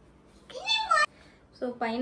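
A single short, high-pitched squeal that rises and falls, like a meow, about half a second in and lasting about half a second. A woman starts speaking near the end.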